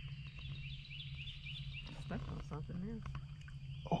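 A songbird giving a quick run of about eight high chirps in the first second or so, over a steady low hum. A few faint clicks and quiet voices follow, and a voice says "Oh" at the very end.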